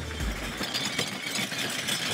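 Order-picking trolley loaded with plastic crates rolling over a warehouse concrete floor, a steady noisy rumble of wheels and crates.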